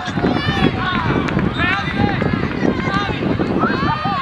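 Many high-pitched young voices shouting and calling over one another during play in a youth football match, over a steady low rumble of outdoor noise.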